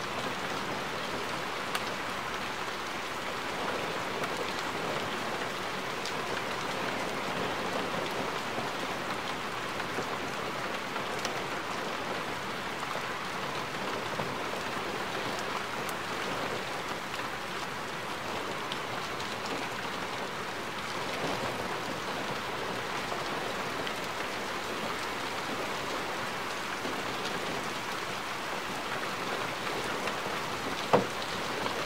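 Steady rain falling on a parked car's roof and windscreen, with the odd louder drop ticking.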